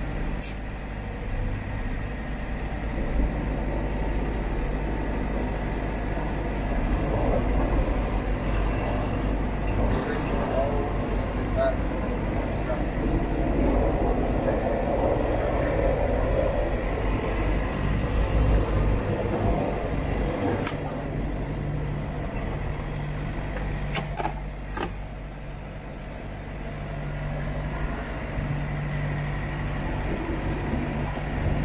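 Semi-truck engine running with a steady low rumble while the truck drives slowly, heard from inside the cab, with road noise swelling in the middle and a couple of short sharp sounds near the end.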